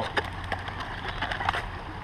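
Rustling and a few short light knocks and clicks from a fabric backpack and its contents being handled, over a steady low background rumble.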